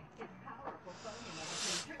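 A man exhaling a lungful of smoke toward the phone: a long breathy hiss that grows louder for about a second, then stops abruptly.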